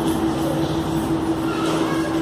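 A steady hum holding one even pitch over a background of room noise.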